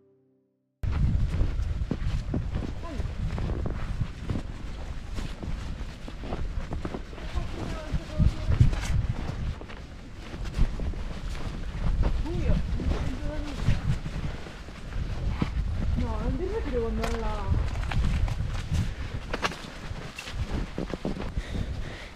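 Footsteps crunching in snow, with wind and handling noise on the microphone, starting abruptly a little under a second in after silence.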